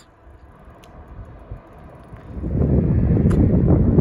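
Wind buffeting the microphone: a quiet stretch, then from about halfway through a loud, gusty low rumble.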